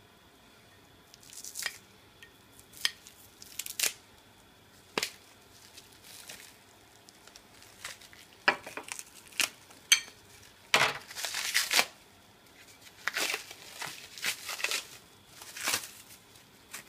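Green cellophane packing wrap crinkling as it is handled and pulled about by hand, in irregular short bursts, with a longer, louder stretch of crinkling about eleven seconds in.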